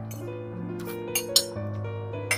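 Background music with steady held notes, over which a metal spoon clinks against a plate several times, the sharpest clink a little past the middle.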